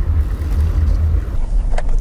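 Low rumble of a truck driving slowly, heard from inside the cab: engine and road noise, heavier for the first second and a half.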